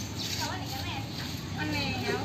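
People talking in the background over a steady outdoor noise floor, with voice bursts about half a second in and again near the end.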